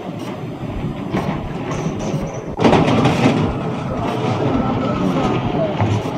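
Tsunami floodwater rushing through a fishing harbour, a loud, steady noisy rush that suddenly grows louder about two and a half seconds in.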